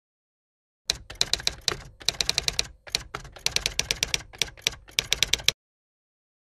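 Typewriter key-strike sound effect: quick, irregular runs of sharp clacks, several a second, starting about a second in and cutting off abruptly about half a second before the end, in dead digital silence.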